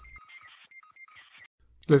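Faint, short electronic beeps at two pitches, coming irregularly for about a second and a half: the sputtering signal tones of a pager-like alien communicator in a cartoon.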